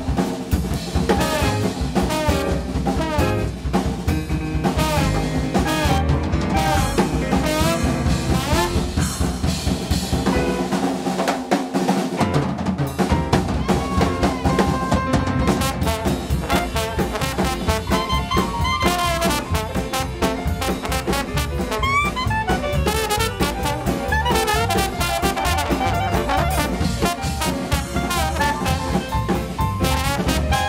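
A small jazz band playing with trombone, clarinet, piano, double bass and busy drum kit. The bass and low end drop out for a couple of seconds partway through.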